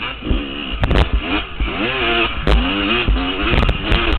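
Yamaha YZ two-stroke dirt bike engine revving up and down in repeated swells as it is ridden along a rough trail. Sharp knocks and clatters come in several times over the engine.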